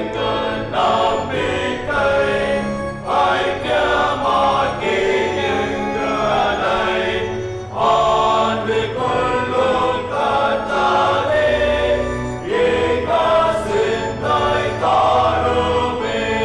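Church congregation singing a Tamil Christian hymn together, steady and loud, over a sustained organ accompaniment.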